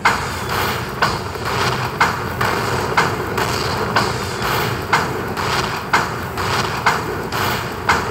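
Buffalo slot machine sound effects as the bonus coins are collected and the win meter counts up: a sharp thudding hit about twice a second over a steady bed of machine sound.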